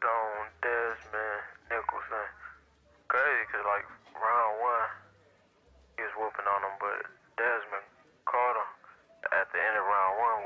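Speech only: a man talking, with short pauses.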